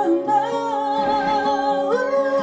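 A woman singing one long held note with vibrato through a microphone, over acoustic guitar chords; her voice glides up in pitch near the end.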